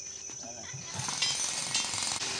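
Rapid metallic rattling and clinking from steel rebar and tie wire as workers tie a reinforcing-bar cage, growing louder about a second in.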